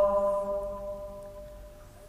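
The end of a long held note of the adhan, the Islamic call to prayer, ringing on in its echo and fading away steadily.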